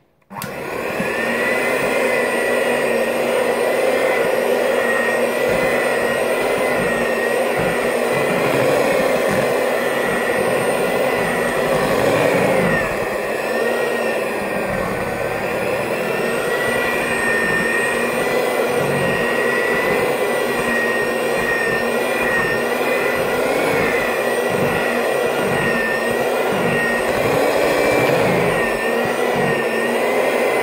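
Electric hand mixer switched on just after the start and running steadily, its beaters working through thick brownie batter in a plastic bowl; the motor whine wavers slightly in pitch as the load changes.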